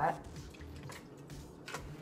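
Fruit-cup pieces and their juice dropping into a blender jar: soft wet plops and drips, with a few faint splats.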